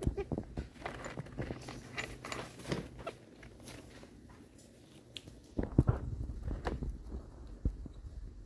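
A hen pecking at and taking bits of a soft dinner roll, a scatter of short beak taps and pecks in two bursts: through the first three seconds and again around six seconds in.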